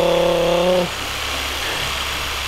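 Theragun percussive massage gun running with a steady electric buzz. It is louder for about the first second, then settles to a quieter, lower drone.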